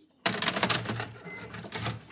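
A VCR's loading mechanism clattering as a VHS cassette is taken in: a sudden fast run of mechanical clicks and rattle over a low motor hum, starting about a quarter second in and easing off near the end.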